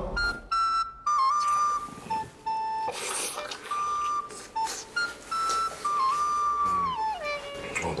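Background music: a simple whistle-like melody of held notes that step between a few pitches, ending with a downward slide near the end, over a few faint short clicks.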